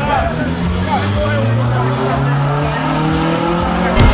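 Car engine accelerating hard, its pitch climbing steadily over a few seconds, with people talking.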